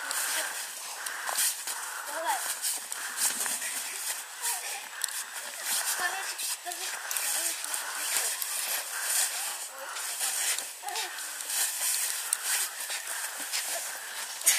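Footsteps crunching on packed snow, along with a small loaded cart being pulled along, as an irregular run of short crunches and scrapes. Voices can be heard faintly underneath.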